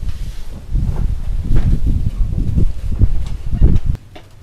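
Loud, uneven low rumble of buffeting on the microphone, stopping abruptly near the end.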